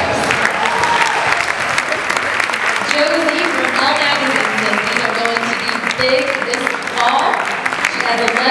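Audience applauding: a steady patter of clapping from a seated crowd, with voices over it.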